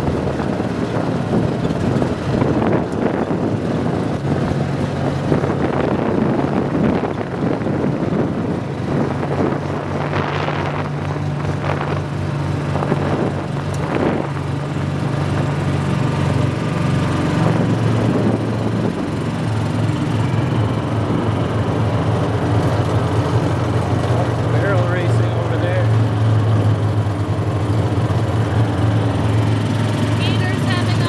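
Gator utility vehicle engine running while driving along a dirt trail, with knocks and rattles over bumps. About two-thirds of the way through, the engine note drops lower and grows a little louder.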